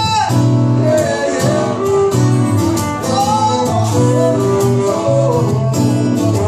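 Live folk band in an instrumental break: strummed acoustic guitar and electric bass under a fiddle melody that slides up and down between notes.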